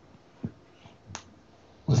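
Two short clicks of a handheld microphone being picked up and handled, one about half a second in and a sharper one just past a second.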